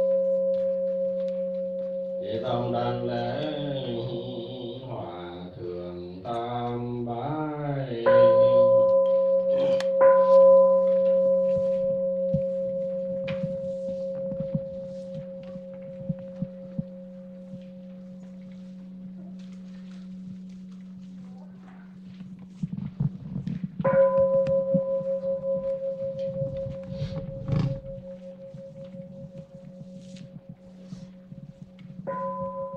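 Buddhist bowl bell struck to mark the bows: a clear ringing tone that slowly dies away, already sounding from a stroke just before the start and struck again about eight seconds in and near twenty-four seconds in.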